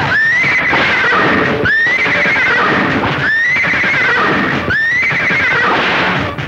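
Horse whinnying: four near-identical high neighs, each rising quickly and then held with a waver for about a second, repeating about every second and a half over a noisy background, as a looped film sound effect for a rearing horse.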